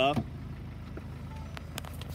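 Steady low hum of a Ford Focus ST's 2.0-litre four-cylinder diesel engine idling, with a few light clicks about a second and a half in.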